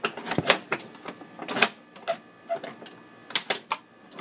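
Rod hockey table game being played: irregular sharp plastic clacks and knocks of the rods, players and puck, loudest about half a second in.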